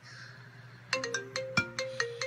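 Mobile phone ringtone: a quick melodic run of short, bright notes starting about a second in, ringing to wake a sleeper, who then answers the call.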